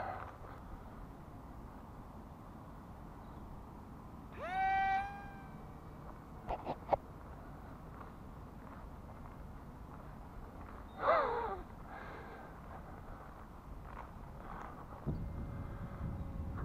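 Faint open-air background with two short pitched animal calls: one about four seconds in that rises and then holds, and one about eleven seconds in that falls in pitch. A few light clicks come between them.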